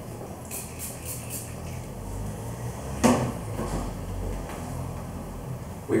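About four quick spritzes from a spray bottle of heat-protection styling spray onto a section of hair, followed by a single knock about three seconds in.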